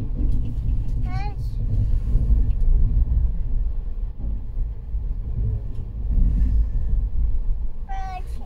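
Running noise of a moving passenger train heard from inside the coach: a steady, loud low rumble of wheels on the track.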